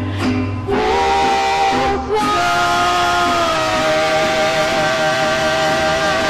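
Live Spanish-language worship music: a woman singing through a handheld microphone over band accompaniment, holding one long wavering note from about two seconds in.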